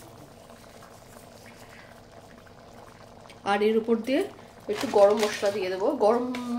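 Thick pea-curry gravy (ghugni) simmering in a cast-iron kadai, bubbling faintly and steadily. A woman's voice starts talking over it about halfway through.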